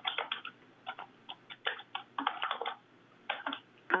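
Computer keyboard being typed on, picked up by a participant's open microphone on a video call: irregular clusters of quick keystroke clicks, sounding thin through the call audio.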